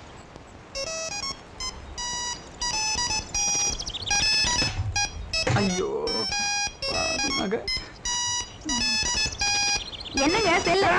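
Electronic beeping: short clipped tones at a few different pitches, in quick repeated runs, starting about a second in and going on to the end.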